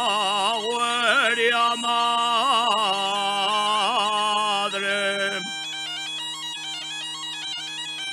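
Male tonada singer holding long, wavering, ornamented notes over the steady drone of an Asturian gaita (bagpipe). About five and a half seconds in, the voice stops and the gaita plays a quick stepped melody alone over its drone.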